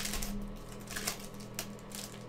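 Foil trading-card pack wrapper being torn open and crinkled: a series of short crackling rips, loudest about a second in, over a steady low electrical hum.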